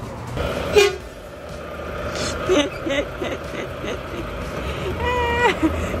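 A short, steady vehicle horn toot lasting about half a second, about five seconds in, over outdoor traffic background.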